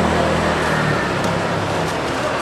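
Street traffic: a motor vehicle's engine running close by, its low hum fading out about a second in, over the steady din of the road.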